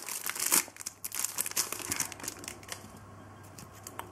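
A foil trading-card packet being torn open and crinkled in the hands, a dense crackling that fades after about two and a half seconds as the cards are slid out.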